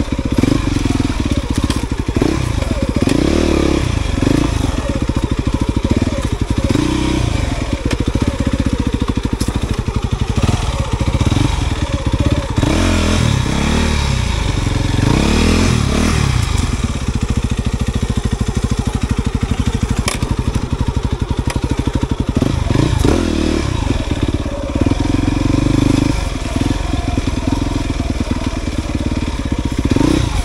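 Dirt bike engine running at low, uneven revs, its pitch rising and falling several times as the throttle is worked on a slow, rough trail.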